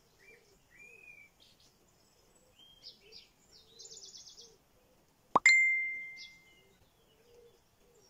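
A sharp click followed by a bright bell-like ding that rings out and fades over about a second, a little past the middle: a subscribe-button sound effect. Behind it are scattered wild bird chirps and a short rapid trill.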